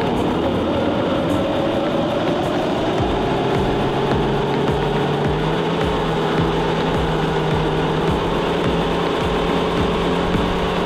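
Suzuki Jimny JB53 engine held at steady revs, creeping slightly higher, while its wheels spin on test rollers, with a low irregular rattle from the rollers. The car stays in place: the spinning wheels on the rollers are not getting it off them.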